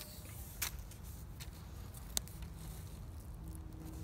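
Quiet handling of cord being fed through a lashing between wooden poles: two sharp clicks, about half a second in and about two seconds in, a few fainter ticks, over a steady low rumble.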